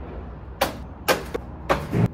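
Apartment front door being handled and shut: three sharp clunks, the last with a dull low thud.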